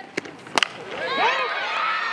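A sharp crack of a softball bat squarely hitting the pitch about half a second in, after a fainter click.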